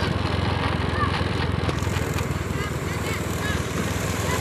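Honda Scoopy scooter's small single-cylinder engine running steadily at low riding speed, a low even drone.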